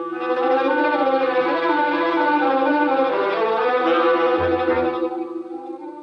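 Orchestral music bridge led by bowed strings, with sustained chords that fade out near the end.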